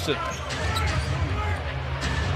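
A basketball being dribbled on a hardwood court over steady arena crowd noise, with faint voices in the background.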